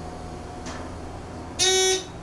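Hydraulic elevator car's electronic arrival signal: one short, loud, buzzy beep near the end, over a faint steady hum from the car.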